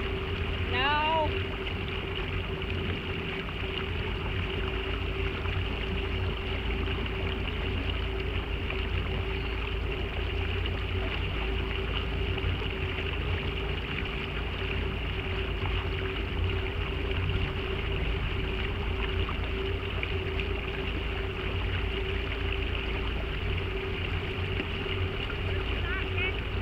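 A boat's motor running steadily while cruising, a constant low rumble with a steady hum, mixed with wind and water noise. There is a short high call about a second in.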